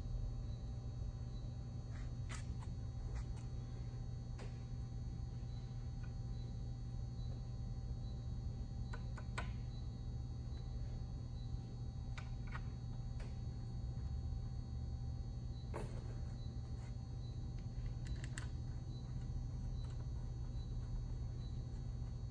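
Faint, scattered clicks and taps as gaskets and metal valve caps are set onto a cast-iron air compressor pump head, over a steady low hum.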